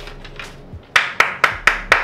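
A quick run of five sharp knocks, about four a second, starting about a second in: hard objects being handled and set down on a kitchen countertop.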